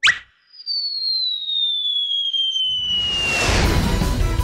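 Cartoon sound effects: a quick rising zip, then one long whistle sliding slowly downward in pitch, the classic sound of something falling from a height. Near the end a loud rushing burst of noise swells up over it.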